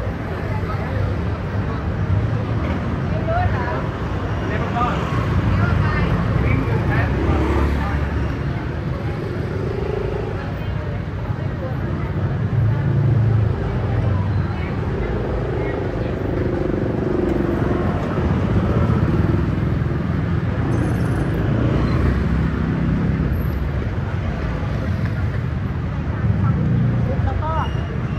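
Street ambience of motor scooters and cars riding past with a steady low engine rumble, and passers-by talking in the background.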